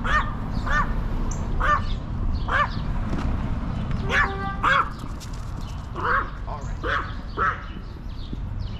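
A bird calling over and over: about eight short calls, each rising and falling in pitch. There is a brief steady tone about four seconds in and a steady low rumble of street noise underneath.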